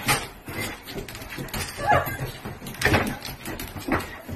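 Excited golden retriever whining in short rising and falling cries, with several sharp knocks and scuffs from the dogs moving about the tiled floor and food bowls.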